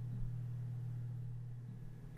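A steady low hum with faint background hiss, easing slightly toward the end.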